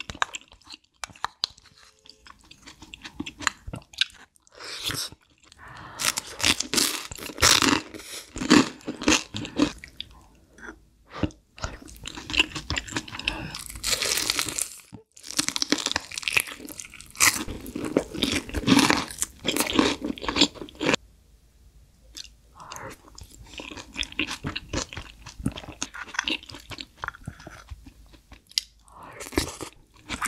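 Close-miked eating sounds: a person chewing spoonfuls of spicy egg stew with rice, in spells of a few seconds with short quieter pauses between.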